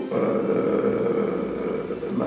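A man's voice holding one long, drawn-out hesitation sound, a steady 'eee' between phrases, fading a little near the end.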